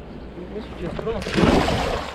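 Water splashing as legs wade through a shallow river, starting a little over a second in and loudest near the end.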